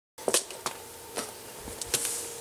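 A few light clicks and knocks of small objects being handled on a wooden workbench, with a soft low thump near the end as a plastic screw-assortment case is set down, over a faint steady hum. It opens with a moment of dead silence.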